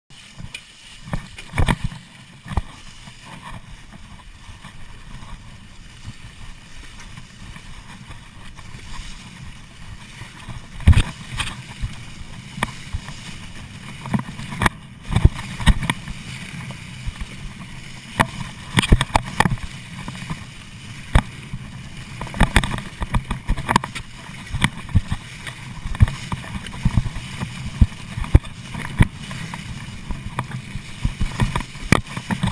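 Mountain bike descending a forest trail covered in dry leaves: a steady rushing noise of rolling and wind, broken by many sharp knocks and rattles as the bike hits bumps. The knocks come more often from about halfway through.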